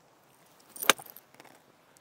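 Golf iron swung and striking a ball off a hitting mat: a brief swish building into one sharp click of impact about a second in, a well-struck shot.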